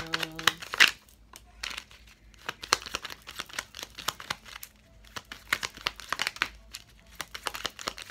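A stack of small paper cards being shuffled and flicked through by hand, with some cards dropped onto a table: irregular runs of crisp flicks and rustles.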